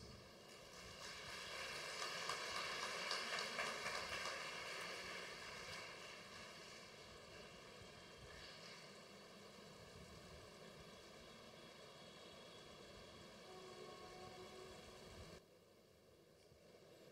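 Faint, even rushing noise that swells over the first few seconds and then slowly fades. A few faint held tones sound near the end, and the noise drops away abruptly just before the end.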